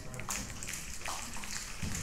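Congregation applauding: a dense, steady patter of many hands clapping.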